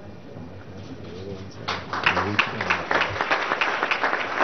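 Low murmur of voices in the audience, then applause breaks out about a second and a half in and carries on.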